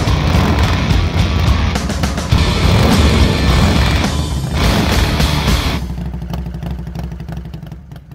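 Intro music layered with the sound of a motorcycle engine revving. About six seconds in it drops to a lower, steadily pulsing engine sound that fades out.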